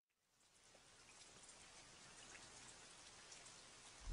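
Very faint hiss with scattered light ticks, fading in slowly from silence, like distant rain.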